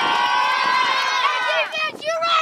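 A huddle of young football players shouting together in one long, held yell that rises slightly in pitch, breaking into short chanted syllables near the end.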